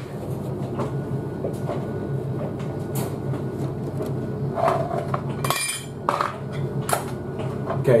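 Light plastic clicks and clinks from the toy washing machine's door and drum being handled, with a sharper knock about five and a half seconds in, over a steady low hum.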